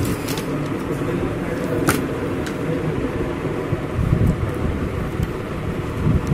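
A few light clicks from handling a laptop's plastic case and parts during disassembly, the sharpest about two seconds in, over a steady low background rumble.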